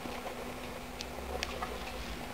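Young fancy mice scrabbling about on wood-shaving bedding: sparse, irregular light clicks and scratches. A faint steady hum runs underneath.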